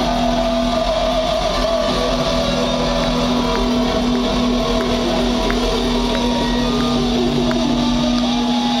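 Live rock band playing loudly through a hall PA, with electric guitars sustaining a long held chord.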